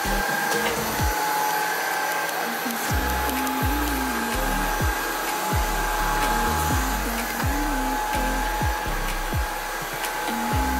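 Cordless stick vacuum running steadily with a high, even whine, under background music with a bass line.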